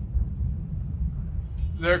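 A steady low rumble, with a man starting to speak near the end.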